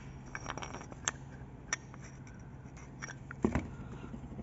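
Light clicks and scrapes of plastic actuator gears being handled against the metal housing of a VGT turbo actuator, a few scattered taps with a short cluster of knocks near the end.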